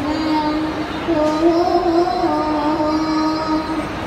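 A young boy singing slow, long-held notes into a microphone, the pitch wavering gently on each held note, over a steady hum of background noise.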